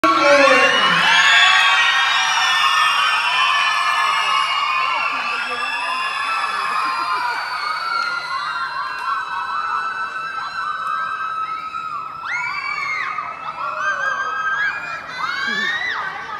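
A crowd of young spectators cheering and shouting, many high-pitched voices overlapping, loudest in the first few seconds. Later, separate long calls rise and fall above the rest.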